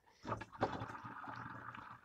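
Faint, steady splash of liquid pouring from a plastic watering can onto garden soil, starting about half a second in after a few light clicks.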